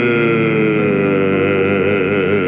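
Male solo voice holding one long sung note, with no break for words: the pitch slides slowly down, then settles into a wide vibrato near the end.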